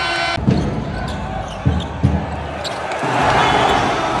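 Basketball dribbled on a hardwood court in a large hall: three low bounces in the first half. The hum of crowd voices grows louder near the end.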